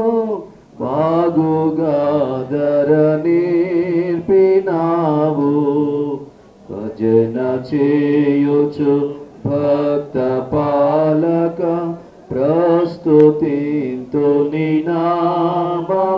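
A solo voice singing a slow devotional song in long held, wavering notes. It sings in phrases of a few seconds, with short breaks between them.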